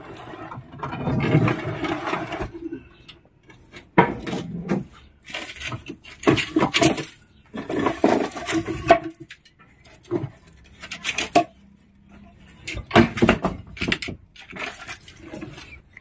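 Irregular knocks, clatters and scrapes of wood pieces and concrete rubble being pulled aside by hand and prodded with a metal rod, with a short laugh about a second and a half in.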